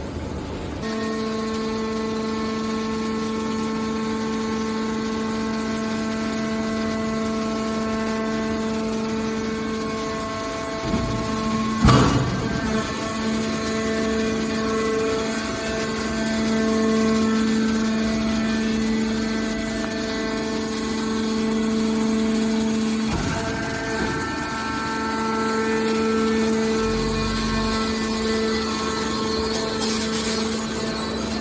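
Hydraulic power unit of a horizontal scrap metal baler running with a steady hum, the pitch dipping and shifting briefly twice. A single loud metallic clank comes about twelve seconds in.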